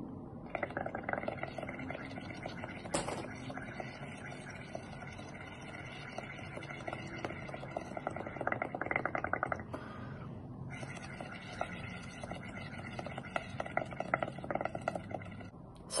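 Blowing through a straw into a shallow layer of soapy water on a plate, a continuous bubbling hiss. It comes as two long blows with a pause of about a second for breath near the middle, and there is one sharp click about three seconds in.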